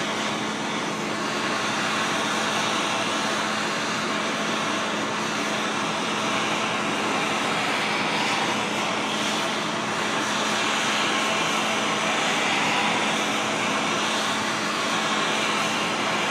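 MAPP gas torch burning with a steady hiss, its flame held on a cast steel axle differential housing to post-heat it after welding so it cools evenly and does not crack.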